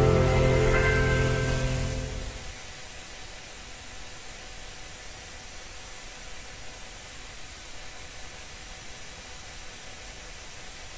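A rock band's final chord, guitar among it, is held and fades out about two and a half seconds in. Only a steady hiss remains after it.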